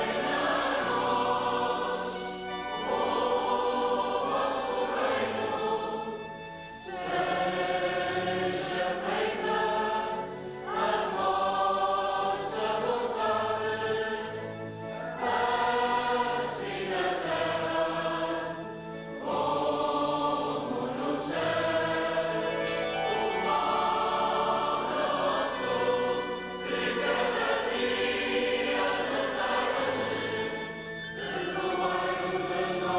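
A church choir singing a liturgical chant phrase by phrase, with short breaths between phrases, over low sustained accompanying notes.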